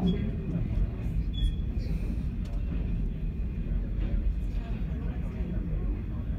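Passenger train carriage rolling slowly on track: a steady low rumble from wheels and running gear, with occasional light clicks and a short faint squeak about a second and a half in.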